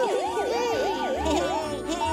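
Cartoon police siren sound effect, a quick up-and-down wail repeating about three times a second and dying away about a second and a half in, over a music bed with low bass notes.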